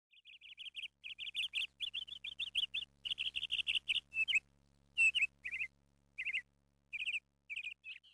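Bird chirping: a fast run of short, high chirps for about four seconds, then slower pairs and small groups of chirps.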